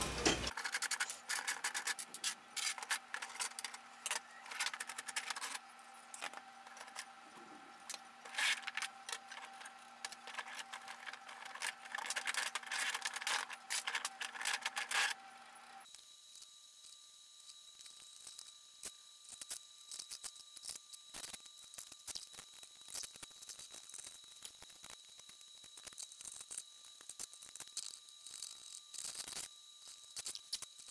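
Small plastic parts clicking, knocking and rattling as 3D-printed clock gears and frame pieces are handled and fitted together by hand. The clatter is irregular and busiest in the first half, over a faint steady hum.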